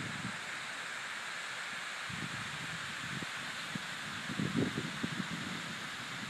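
Outdoor ambience: a steady rushing hiss, with low wind buffeting on the microphone about two seconds in and again between four and five seconds.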